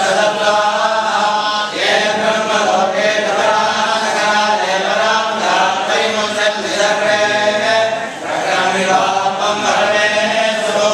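A group of men chanting a Hindu devotional recitation in unison, a steady flowing chant with brief pauses for breath about two seconds and about eight seconds in.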